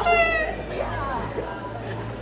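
A young male voice singing a nasyid a cappella: a high held note that dips slightly at the start, then short wavering, gliding ornaments.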